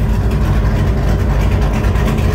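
A car engine idling steadily with a deep, even rumble.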